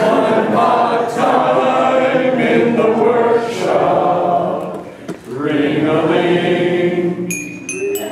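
A small group of men singing a chemistry parody song together, with held, wavering notes and a short break about five seconds in. There is a brief high ringing near the end.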